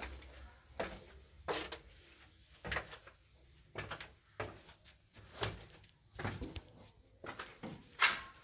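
Footsteps going down a narrow concrete spiral staircase: eight or so uneven steps, about one a second, each a short scuffing thud on the bare steps.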